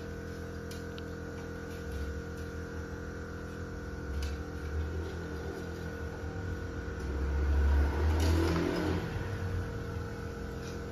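A steady mechanical hum runs throughout, with a low rumble that swells and fades several times and is loudest about eight seconds in. There are a few faint light clicks.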